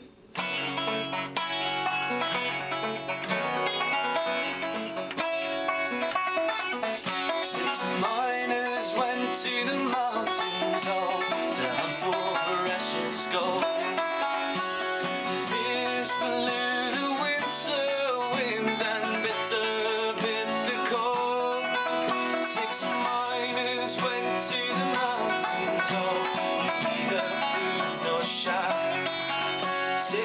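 Instrumental folk break: an acoustic guitar strummed and a banjo picked, with a hand drum keeping time. The band comes in all together suddenly, just after a short pause.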